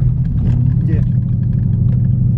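Ford Mustang engine and road noise heard from inside the cabin while driving: a steady low drone.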